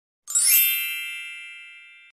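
A bright, high chime sound effect for an animated title card: struck once about a third of a second in, then ringing and slowly fading.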